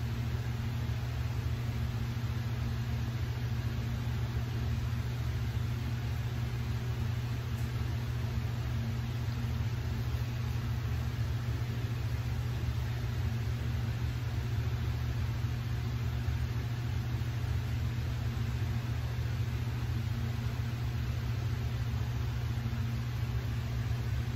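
Steady low mechanical hum over a faint even hiss, unchanging throughout.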